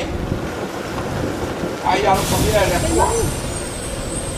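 Steady low rumble of a heavy vehicle's engine, with a short burst of hiss about two seconds in. A voice is heard briefly in the middle.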